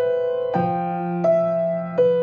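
Acoustic grand piano playing a slow, simple melody: single right-hand notes struck about every 0.7 s and left to ring over sustained left-hand bass notes, with a new lower bass note coming in about half a second in.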